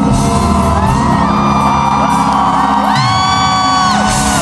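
Live pop concert music heard from the stands of a stadium, with a steady beat and bass under voices that slide up into long held notes about three seconds in, and whoops from the audience.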